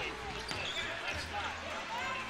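Basketball being dribbled on a hardwood court, under faint arena crowd noise.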